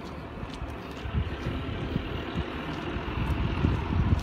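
A distant vehicle engine, such as a tractor working down the street, under wind buffeting the phone microphone in irregular low gusts.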